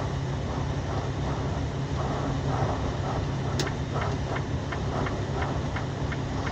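Steady road and engine noise inside a moving car's cabin: an even low hum with tyre rumble, and a faint tick about halfway through.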